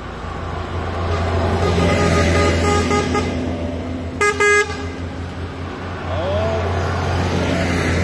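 Diesel articulated city buses driving past close by one after another, their engines rising and falling as they go. About four seconds in come two short horn toots, the loudest sound.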